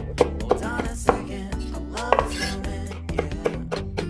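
A kitchen knife chopping spring onions on a wooden cutting board: a quick, uneven run of sharp knocks of the blade on the board, about three a second. A song with a steady beat plays underneath.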